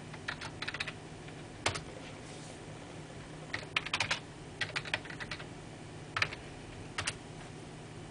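Computer keyboard being typed in short bursts of keystrokes with pauses between, as a short command is entered at a terminal. A faint steady low hum runs underneath.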